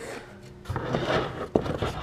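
A solid sanding block with 60-grit paper being handled and set onto a body-filler-coated dash panel, with a sharp knock about one and a half seconds in. Near the end the paper starts rubbing over the filler as block sanding begins.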